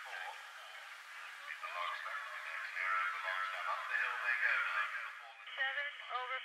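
Cross-country course commentary heard over a radio speaker: a thin, tinny voice, too indistinct to make out. A clearer voice starts near the end.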